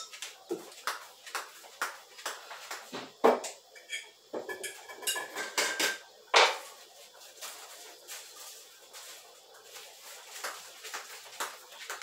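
Kitchen clatter: containers and dishes being picked up and set down, a run of scattered knocks and clinks, the loudest about six seconds in.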